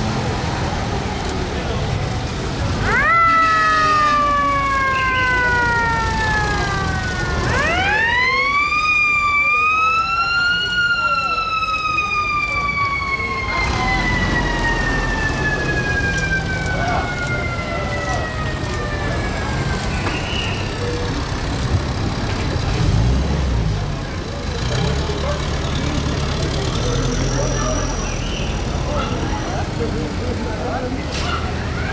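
A siren winds up twice: a quick rise about three seconds in that slowly falls away, then a second rise that peaks and winds down slowly over about ten seconds. Underneath, the engines of WWII military jeeps run steadily in a slow-moving convoy.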